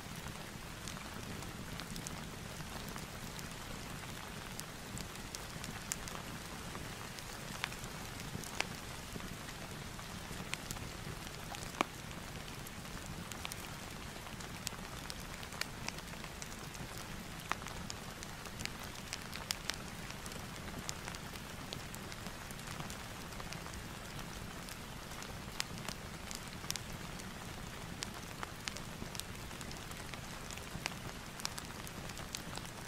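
Rain and fireplace ambience: a steady rain hiss with scattered sharp crackling pops throughout.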